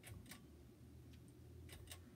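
Faint clicks of a switch being worked overhead, two quick pairs, one near the start and one near the end, as a fan is turned from low up to medium. A faint low hum lies underneath.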